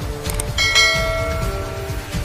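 Background music with a beat, overlaid with a subscribe-button animation's sound effects: a quick double mouse click, then a bright notification-bell ding about half a second in that rings on for about a second.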